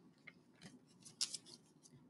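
Faint, crisp paper sounds of a picture book's page being turned: a few soft clicks and rustles, the clearest a little over a second in.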